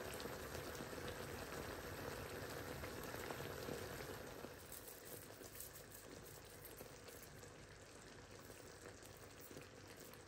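Curry gravy simmering in a pan on the stove, a faint steady bubbling and crackling, dropping somewhat quieter about four and a half seconds in.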